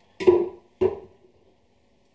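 Two knocks about half a second apart, the second fainter: the long metal stirring spoon tapped against the plastic fermenter after stirring the wort.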